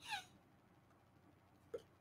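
Near silence, broken right at the start by one brief high squeak that falls in pitch, and by a faint tick near the end.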